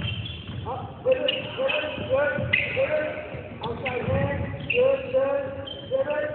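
A basketball bouncing on a hardwood gym floor, a series of low thumps, amid short high-pitched pitched sounds.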